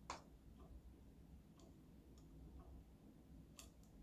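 Near silence with a few faint clicks, one sharper click at the very start: a small plastic eyelash curler being handled at the eye.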